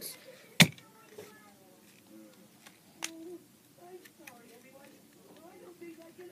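Handling of plastic toy-car packaging while its ties are taken off: a sharp click about half a second in, another about three seconds in, and light ticks between.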